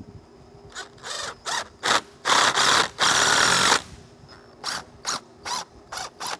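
Cordless impact driver sinking a Tapcon concrete screw through a wooden buck strip into the concrete block, run in short trigger bursts, then two longer runs of about a second each partway through, then more short bursts near the end.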